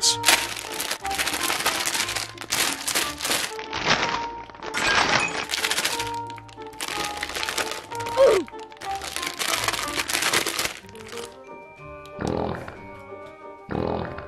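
Plastic blind-bag wrapper crinkling and tearing as it is pulled open, in repeated bursts until about eleven seconds in, over background music.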